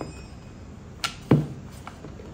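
Wooden rolling pin rolling out a roti on a round rolling board: two knocks about a quarter of a second apart a little after a second in, the second louder and lower, over a faint steady background.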